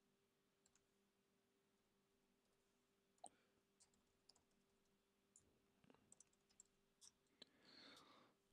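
Near silence, broken by a few faint computer-keyboard key clicks: a single one about three seconds in and a small cluster near the end. A faint steady hum sits underneath.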